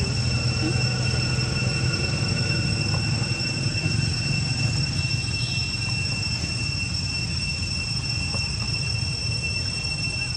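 Outdoor background: a steady high-pitched drone on one unchanging pitch, over a low rumble.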